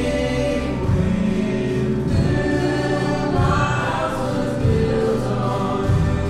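A man singing a worship song while accompanying himself on a grand piano, with a group of voices singing along.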